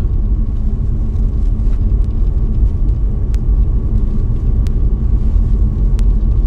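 Steady loud low rumble with a faint constant hum, of the kind a moving vehicle makes, broken by a few faint ticks.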